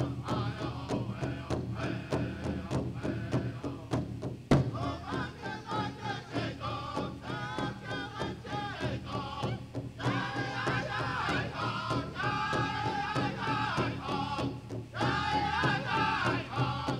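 Powwow drum group singing in unison over a steady big-drum beat. One harder drum stroke comes about four and a half seconds in, and the voices rise higher and louder from about ten seconds in.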